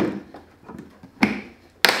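Plastic knocks as a bucket-top wet/dry vac powerhead is set down and pressed onto the rim of a plastic five-gallon bucket. There is one knock at the start, another just past a second in, and the sharpest, loudest one near the end as it seats.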